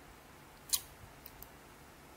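A single computer mouse click, with two fainter ticks about half a second later, over quiet room tone.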